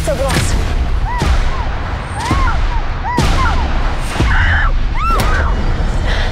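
Film-trailer sound design: a string of loud, gunshot-like booms about once a second, six in all, each followed by a short rising-and-falling whine, over a low rumble.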